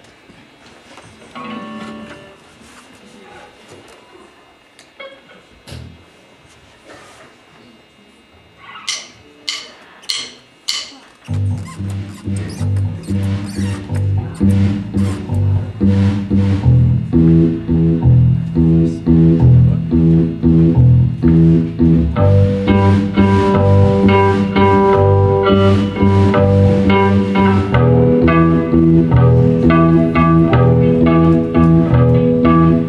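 A small rock band with electric bass, electric guitar and drum kit starts a song after a four-click count-in about nine seconds in. The band then plays a steady groove with a strong, repeating bass line, and higher guitar or keyboard notes join about halfway through.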